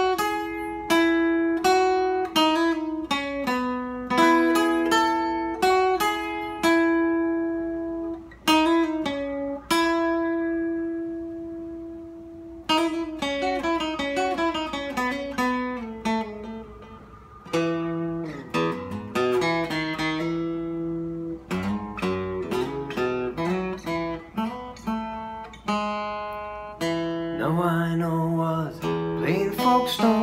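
Steel-string acoustic guitar played solo, an instrumental passage of picked notes and chords ringing out. Twice, about ten and sixteen seconds in, a note is left to ring and fade before the playing picks up again.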